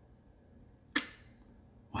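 Near silence, broken about a second in by a single sharp click that dies away quickly; a woman's voice starts right at the end.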